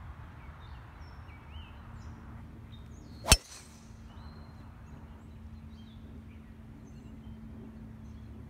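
A golf driver striking a teed golf ball: one sharp crack about three seconds in, with a brief ring after it.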